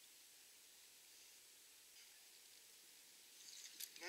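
Near silence: steady faint hiss with a few faint clicks and rustles near the end.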